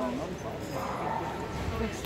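A dog yipping and barking over background chatter.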